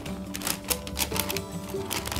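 Background music over quick, irregular clicking and crinkling of glossy wrapping paper being folded by hand.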